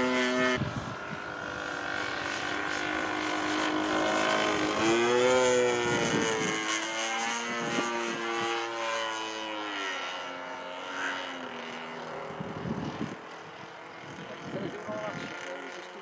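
A 3DHS Extra 330LT radio-controlled plane flying overhead. Its motor and 19x8 propeller drone with a pitch that rises and falls through the passes, and the sound grows fainter toward the end.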